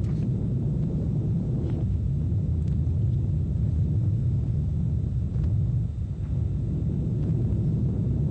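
Atlas V rocket's RD-180 first-stage engine at full thrust, climbing just after liftoff: a steady low rumble.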